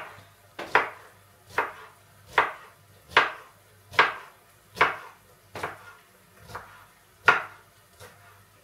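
Kitchen knife chopping a red bell pepper into small squares on a wooden cutting board: about ten steady, evenly spaced strokes, roughly one every 0.8 seconds, the last one near the end the loudest.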